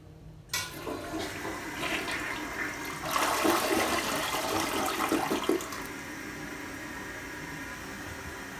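ProFlo toilet flushing: a sudden rush of water starts about half a second in, grows loudest for a few seconds, then drops off to a steady, quieter running of water into the bowl.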